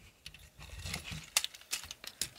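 Plastic parts of a Transformers Optimus Prime action figure clicking and rubbing as they are folded and pegged together by hand, with a few sharp clicks in the second half.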